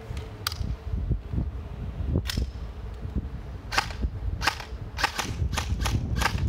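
Airsoft AK-pattern rifles firing shots one at a time, each a sharp snap. The shots come at irregular intervals, several in quick succession in the last two seconds.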